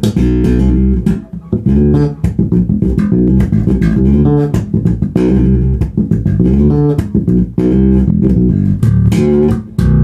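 Dingwall NG2 fanned-fret electric bass played fingerstyle through a Gallien-Krueger MB Fusion 800 head and ML-112 cabinet: a funk bass line in D, a run of short plucked notes in a phrase that repeats about every two and a half seconds.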